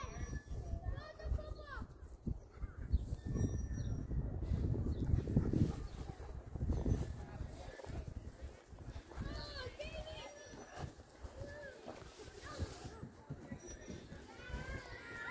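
Distant children's voices calling out across the park, with a low rumbling noise in the middle of the stretch.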